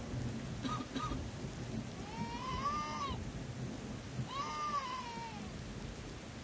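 Rain ambience with a low rumble under it, and a cat meowing twice, once about two seconds in and again about four seconds in, each meow rising then falling in pitch.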